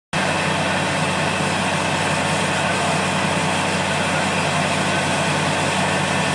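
Steady drone of a water tanker truck's engine under the even hiss of a water jet spraying from a hose.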